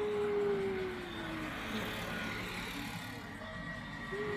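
Road traffic noise, with a long pitched tone that slides slowly downward over the first second and a half.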